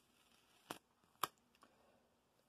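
Two brief faint crackles from a sheet of thin plastic hydrographic film with a masking-tape border as it is lifted and handled, in near silence.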